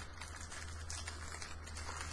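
Low steady hum with faint rustling and light ticks as a small package is handled in the hands.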